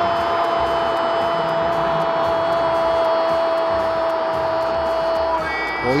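A football commentator's long, held goal shout of "gol", one steady note lasting about six seconds over stadium crowd noise, that breaks off shortly before the end.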